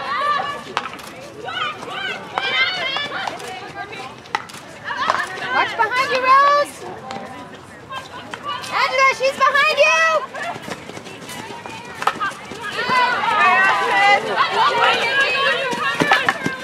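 People talking and calling out in several bursts, with scattered sharp clicks of field hockey sticks striking the ball.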